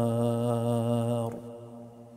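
A man's voice in melodic Quran recitation, holding the drawn-out final note of a verse at a steady pitch. The note stops a little over a second in and fades away.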